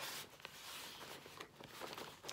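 Hands turning and rubbing a cardboard shipping box: a soft scraping rustle, strongest in the first second, with a couple of light taps.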